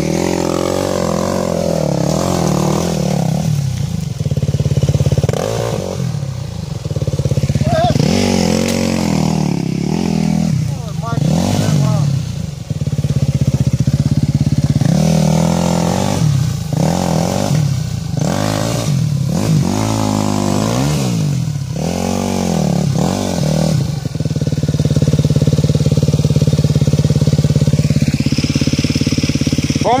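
Enduro dirt bike engine revving up and down again and again under load on a steep, loose, rocky climb, then running steadier and higher near the end.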